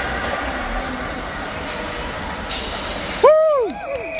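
Steady noisy ice-rink ambience, then about three seconds in one loud, high-pitched shout close by that rises and falls: a spectator cheering a goal in a youth ice hockey game.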